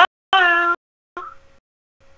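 A cat meowing: a short call rising in pitch, then a louder held call that falls slightly, with a faint short call after it.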